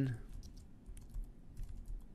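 Computer keyboard typing: an uneven run of key clicks, several a second, as a word is typed out.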